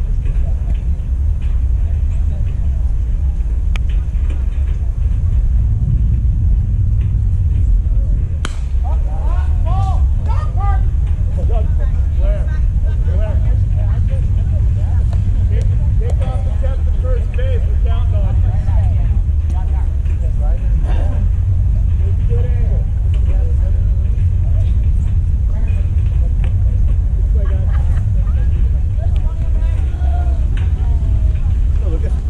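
Outdoor ambience at a baseball game: a steady low rumble on the microphone throughout, a single sharp knock about eight seconds in, then distant voices calling out on and off across the field.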